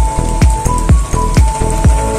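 Background music with a steady beat of about two thumps a second, over the crackle of oil frying an egg-and-chicken fritter in the pan.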